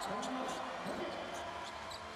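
A basketball bouncing on a hardwood court under the steady noise of an arena crowd.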